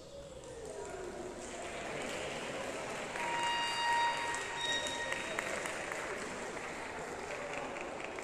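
The orchestra's last note dies away, then the hubbub of a rehearsal pause: many musicians and singers talking at once and moving about in a reverberant hall, with a brief held note about three seconds in.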